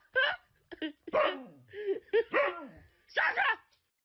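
Siberian husky barking and yowling in a run of about six short calls, several of them falling in pitch.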